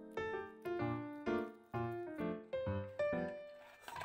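Background music: a light melody of short notes that start sharply and fade quickly, about two notes a second.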